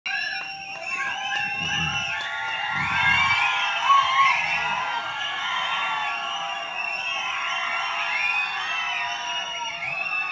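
Audience cheering and screaming, many high voices overlapping in a steady din.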